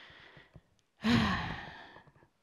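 A woman's audible sigh: one breathy exhale about a second in, starting with a brief voiced edge and trailing off.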